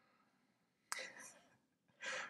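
A short breathy laugh through a smile, starting sharply about a second in and fading within half a second; near silence around it.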